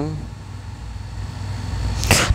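Low, steady background hum in a pause between words, growing slightly louder toward the end.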